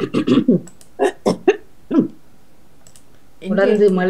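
A person's voice in a few short bursts with sliding pitch during the first two seconds, then a pause, and talking starts again near the end.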